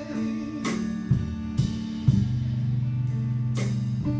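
Live blues band playing an instrumental passage between vocal lines: guitar and held low notes over drum-kit hits.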